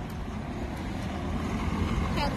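Road traffic noise: a steady low rumble of passing vehicles.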